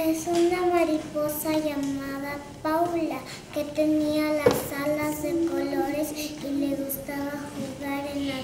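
A young child singing alone, without accompaniment, in long held notes with short breaks between phrases. A sharp click sounds about four and a half seconds in.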